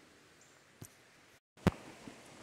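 Faint background hiss with a small click, then a brief moment of dead silence ended by one sharp, loud click where one recording is spliced onto the next.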